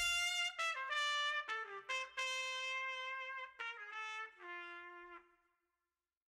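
Background music: the full band stops and a lone brass instrument plays a short run of held notes, the last one fading out about five seconds in.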